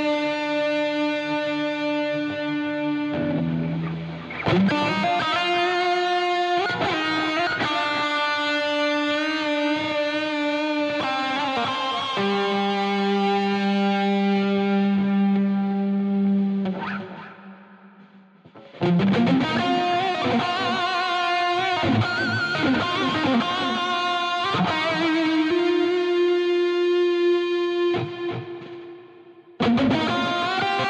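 Instrumental rock arrangement led by distorted electric guitar playing long held chords. The music breaks off into a brief gap about halfway through and again just before the end.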